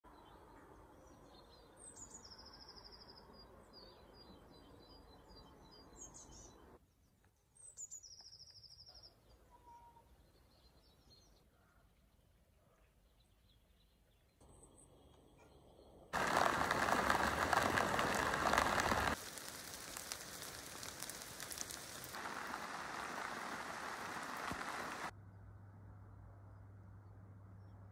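Quiet outdoor ambience in which a bird calls twice, a few seconds apart, each call a short falling note followed by a fast high trill. Later comes a few seconds of loud, steady rushing noise, and then a softer stretch of the same.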